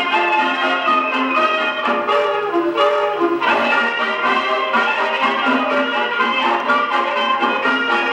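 A 1926 Duophone Junior Table Grand acoustic gramophone, with its double soundbox, playing a 1925 Columbia 78 rpm shellac record of a hot 1920s dance band. The sound is lively dance-band music, bright in the middle range with little bass.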